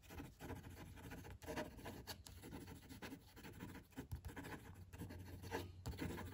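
Lamy Logo fountain pen's medium steel nib moving quickly across paper in fast handwriting, a faint run of short, irregular pen strokes.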